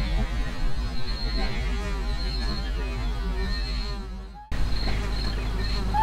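Outdoor background of a steady low hum with a thin, high insect chirring that comes and goes. The sound drops out abruptly for a moment about four and a half seconds in, then the same background resumes.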